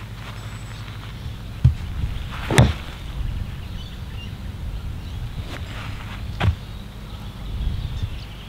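Ping iron striking a golf ball off a practice mat: one sharp, solid crack about two and a half seconds in, a well-struck shot. A couple of softer knocks follow over a steady low outdoor hum.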